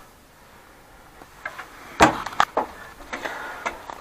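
Knocks and clunks in an Ursus C-360 tractor cab as a boot is set on the clutch pedal: one sharp knock about two seconds in, followed by a few lighter clicks and knocks.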